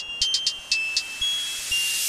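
Instrumental dark trap beat in a sparse breakdown: thin, high chime-like tones over short ticking hi-hats, with a noise riser swelling in the second half just before the drop.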